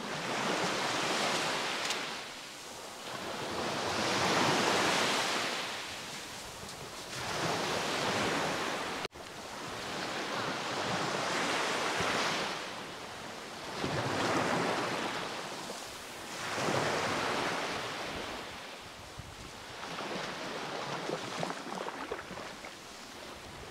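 Small waves breaking and washing up a sandy beach, the hiss of the surf swelling and fading with each wave, about every two to three seconds.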